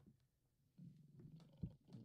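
Near silence: a faint low rumble and a soft click about one and a half seconds in.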